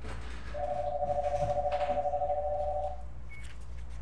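A telephone's electronic ringer warbling through one ring of about two and a half seconds.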